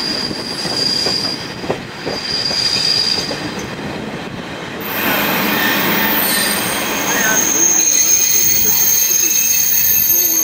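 Passenger train's wheels squealing on the rails as it rolls slowly into a station platform, heard from an open carriage window over the rolling rumble. A high squeal comes and goes in the first half, then from about halfway a louder, higher steady squeal sets in as the train slows.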